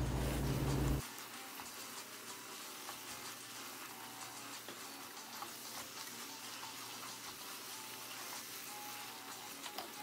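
Minced dullet meat sizzling faintly in a pot as it is stirred, with light scrapes of a wooden spoon. A louder low hum cuts off about a second in.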